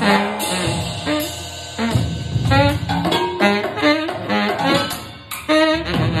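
Solo tenor saxophone improvising: a run of short notes at shifting pitches in quick phrases, with a brief drop in level about five seconds in before the next phrase starts.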